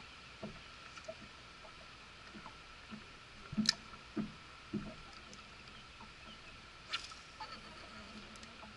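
Small water slaps and soft knocks against a bass boat's hull as it rocks at rest, over a faint steady high whine. Two sharp clicks stand out, one about halfway through and one near the end.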